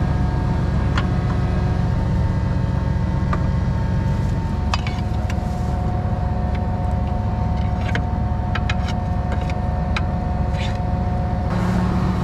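Tractor engine idling steadily, with a few light clicks over it.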